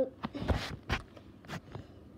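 Handling noise from a plastic water bottle being picked up and moved: a few knocks, two of them deeper thuds about half a second apart, and a short rustle of plastic.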